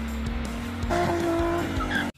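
Music over the sound of a green Opel Kadett E doing a burnout, its engine held high and its rear tyres spinning and squealing on paving.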